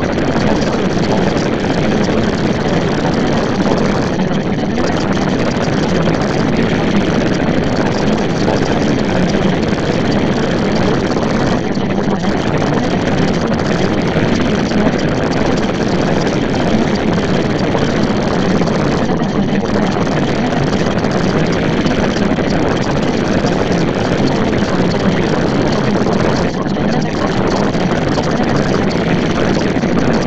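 Steady, loud rushing drone of noise, with brief dips repeating about every seven and a half seconds, as of a looped background noise track.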